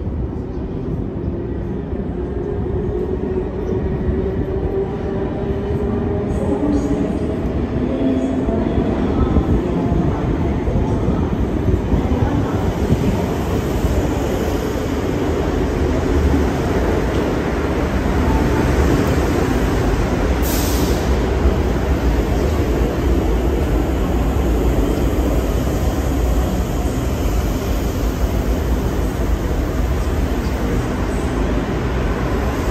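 Sydney double-deck electric suburban train arriving in an underground station. A rumble builds, with a slowly falling whine as it approaches and slows. The carriages then roll loudly past along the platform, with a brief high hiss about twenty seconds in.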